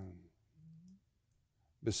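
A man's voice speaking slowly in prayer: one phrase trails off at the start, a near-silent pause follows with a faint low murmur, and the next phrase begins just before the end.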